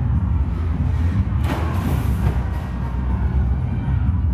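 Loud arena music with heavy bass during a robot combat fight. About a second and a half in, a burst of rushing noise lasts just over a second.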